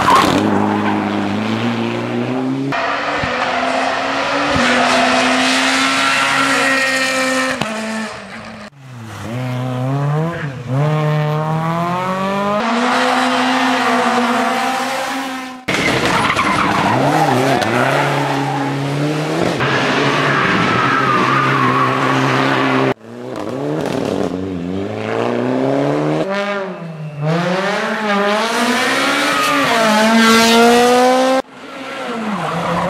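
Rally cars driven flat out on a tarmac stage, one of them a Mitsubishi Lancer Evolution, their engines revving hard and dropping back through gear changes and lifts, with tyres squealing. Several cars pass in turn, and the sound changes abruptly at each cut.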